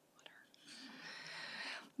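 A woman drawing in a breath close to a podium microphone: a soft airy hiss that starts a little over half a second in, grows louder for about a second, and stops just before she speaks again.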